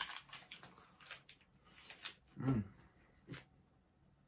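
Plastic chocolate-bar wrapper crinkling as it is pulled open, the crackle dying away after about a second; a few separate clicks follow, with a short hummed "mm" about two and a half seconds in.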